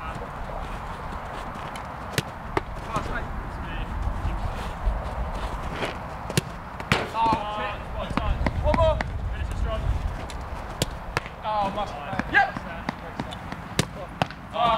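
Footballs being kicked and hitting gloves, ground and net during a goalkeeper save drill: sharp single thuds scattered through, with short shouted calls in between.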